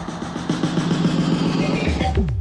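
Engine running at a steady idle, a low even drone, as a sound effect in a radio broadcast. It cuts in abruptly as the music stops, and music comes back in at the end.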